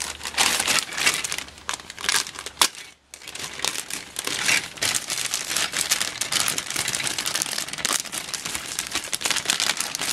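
Thin clear plastic bag crinkling as it is handled and pulled open around black plastic model-kit parts trees, with a short pause about three seconds in.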